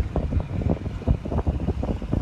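Wind buffeting a phone's microphone: a low, gusty rumble that rises and falls irregularly.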